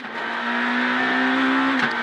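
Renault Clio R3 rally car's four-cylinder engine held at high revs at full throttle, heard from inside the cabin: one steady note, with a short break in it near the end.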